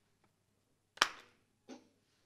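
A single sharp click about a second in, followed by a fainter short sound near the end.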